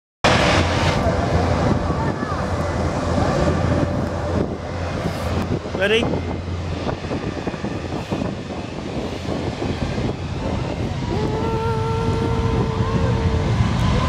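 Airbus A380 jet engines running on the runway with a steady rumble and rush, mixed with crowd chatter.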